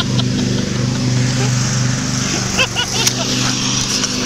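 An engine idling steadily, with a sharp click about three seconds in.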